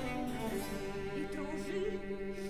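Baroque opera accompaniment: held string chords over a cello and harpsichord continuo, in a short pause between sung lines.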